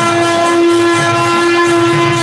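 Conch shell blown in one long, steady, horn-like note, over faint jingling of hand cymbals.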